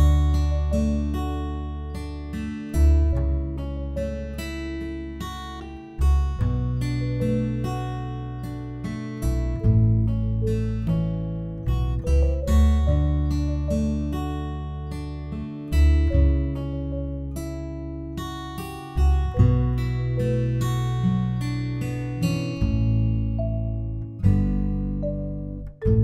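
Acoustic guitar music: plucked notes and strummed chords over low bass notes, the chords changing every second or two.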